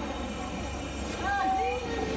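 Background chatter of several people over a steady low hum, with a brief higher-pitched held tone about a second in.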